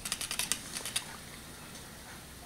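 Rapid light ticking from a spinning toy plastic pinwheel windmill, thinning out and stopping about a second in, then faint room noise.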